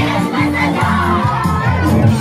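A crowd of children shouting and cheering over electronic keyboard music played through a loudspeaker, its bass notes repeating steadily.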